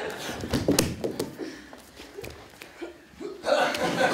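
Laughter and short, hiccup-like vocal sounds, with a few sharp knocks in the first second. The voices die down in the middle and swell again near the end.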